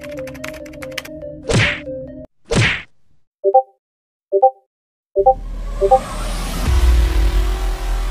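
Keyboard typing clicks over soft background music, then two quick whooshes and three short Discord message notification pings. About five seconds in, a loud, deep rumbling sound effect with building hiss takes over.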